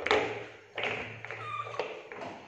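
Billiard balls being set down on a plastic chair seat, knocking against each other and the plastic: a few hard clacks and thuds, the loudest right at the start, then another about a second in and one near the end.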